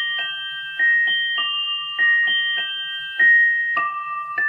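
Musical pocket watch chime playing its slow melody: bell-like notes struck about two or three a second, each ringing on under the next.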